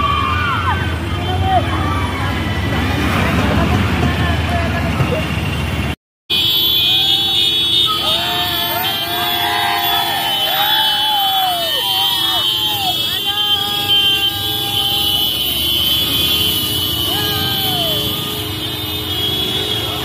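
Scooter and motorbike engines and road traffic, with people shouting and calling out over them. The sound cuts out briefly about six seconds in, then carries on.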